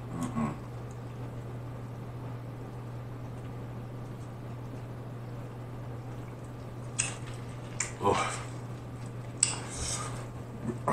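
A man drinking from a plastic drink bottle. The swallowing is barely heard under a steady low hum, and near the end come a few short clicks and rustles as the bottle is lowered.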